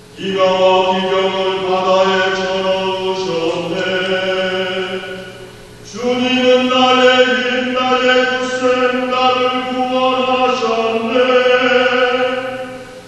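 Church choir singing the Gradual, the responsorial chant after a scripture reading, in long sustained phrases that step from note to note; a second phrase begins about halfway through after a brief breath.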